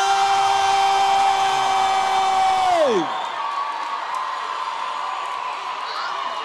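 An announcer's voice holding one long drawn-out shout at a steady pitch, dropping away just under three seconds in. Crowd cheering follows.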